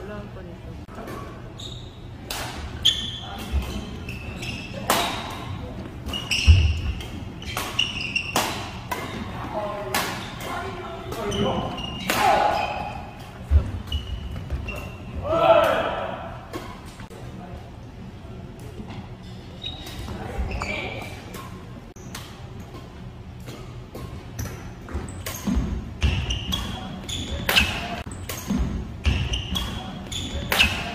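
Badminton rackets striking a shuttlecock again and again through doubles rallies, with players' short shouts mixed in. The hits come in quick runs, busiest near the end.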